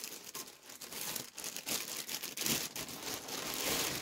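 Clear plastic packaging bag crinkling as a floral baby sleeper is pulled out of it: an irregular run of crackles that grows denser and louder in the second half.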